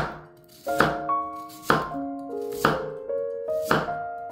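Chef's knife slicing through a raw peeled potato and knocking on an end-grain wooden cutting board, one cut about every second, five in all.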